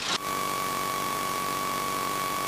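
Cessna 162 Skycatcher's Continental O-200 four-cylinder engine idling on the ground, heard from the cockpit as a steady drone with a thin, steady whine on top.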